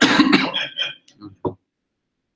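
A man coughing: one loud cough, then a few short, smaller coughs, stopping about a second and a half in.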